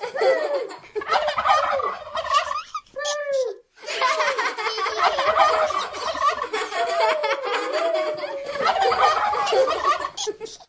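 Turkey gobbling and calling over and over: a run of short calls that rise and fall in pitch, with a brief break about three and a half seconds in.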